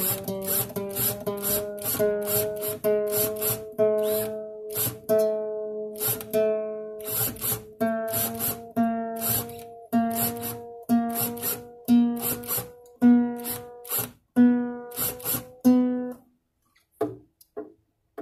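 Single strings of a nylon-string acoustic guitar plucked over and over while a tuning peg is turned, each note creeping slowly up in pitch as the new strings, still stretching in, are brought up to tune. The plucks come about twice a second at first; about eight seconds in a higher string takes over, plucked about once a second, and the plucking stops near the end.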